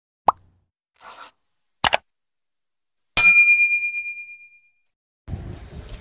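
Edited intro sound effects: a quick pop, a short swish, a double click, then a loud bright ding that rings out for about a second and a half. Faint background noise comes in near the end.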